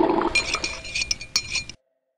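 Alarm clock bell ringing: a bright metallic jangle of rapid strikes that cuts off suddenly near the end.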